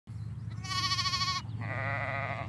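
Newborn lambs and ewes bleating twice. A high bleat comes about half a second in, then a second, lower, wavering bleat carries on past the end.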